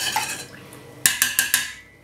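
Metal spoon stirring liquid in a stainless steel saucepan and knocking against the pot: a clink at the start and a second about a second in that rings briefly.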